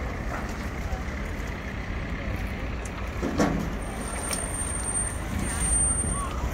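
Steady low rumble of a vehicle engine running in street noise. A brief voice sounds about three and a half seconds in, and a thin high tone comes and goes in the second half.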